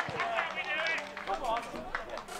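Footballers and spectators shouting and calling out during play, with a dull thump right at the start.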